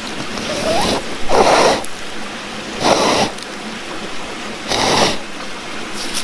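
A metal crevicing tool scraping gravel out of a crack in bedrock: three scraping strokes, about a second and a half apart, over the steady rush of a river.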